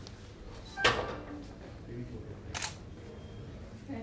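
Indistinct voices in the background, with two brief noisy sounds: the louder about a second in, the other about two and a half seconds in.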